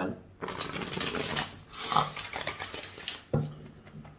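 A tarot deck being shuffled by hand: a dense run of rustling, flicking card sounds lasting about three seconds, with sniffing from the reader's allergies.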